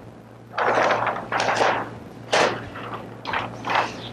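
Large paper plan sheets on an easel rustling and crackling as they are lifted and flipped over, in a series of irregular bursts.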